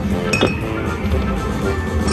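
Aristocrat Prost Deluxe slot machine's electronic bonus-round music with a glass-clinking sound effect, a sharp ringing strike about half a second in, as the reels land during the free games.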